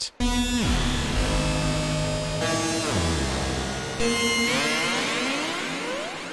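Dissonant, heavily detuned synth patch from Arturia Pigments playing three sustained chords about two seconds apart. Its pitches slide downward after the first two, and pitch-shifted delay and shimmer reverb sweep upward through the third as it fades.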